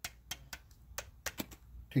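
Quick, irregular light clicks and ticks from a red hand-held reloading press as its lever is worked, pushing a bullet through a bullet-sizing die.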